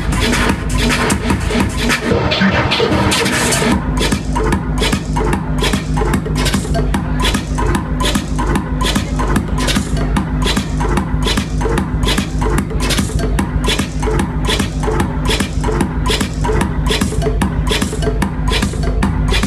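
Loud electronic dance music from a DJ set played over a club sound system, driven by a steady kick drum at about two beats a second. About two seconds in there is a short break where the bass thins out under a noisy wash, then the kick comes back in.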